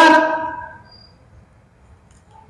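A man's chanting voice holds and draws out the last syllable of a recited Qur'anic phrase, then fades out within the first second. Quiet room tone follows.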